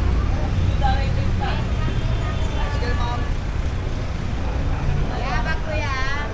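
Busy street ambience: a steady low rumble of traffic with scattered voices of passers-by.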